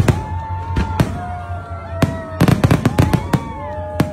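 Aerial fireworks bursting in a run of sharp bangs, several in quick succession past the middle, with music playing underneath.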